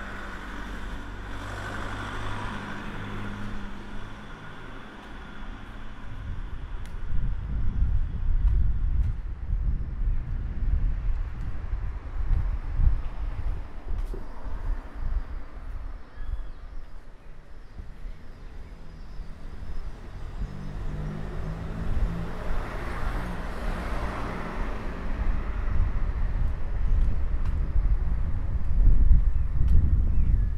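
Quiet street ambience with a car engine heard passing twice, once near the start and again about two-thirds of the way through. Beneath it runs an irregular low rumble of wind on the microphone.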